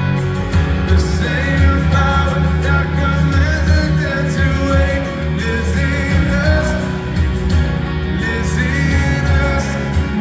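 Live band performance: a male lead vocal sings the chorus of a Christian pop-rock song over strummed acoustic guitar and a full backing band. It is heard from within an arena audience.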